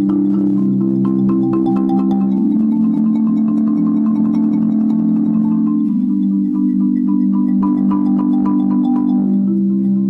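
Marimba played with rapid mallet rolls on its low bars, holding sustained chords that change a few times.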